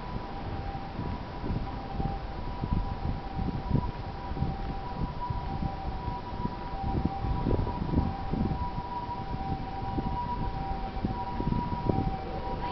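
A steady high hum of two unchanging tones, held throughout, over irregular low thumps and rumble.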